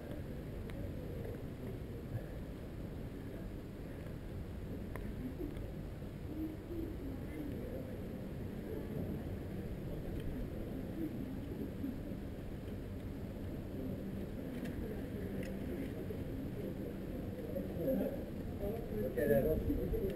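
Steady low outdoor rumble with faint voices in the background now and then.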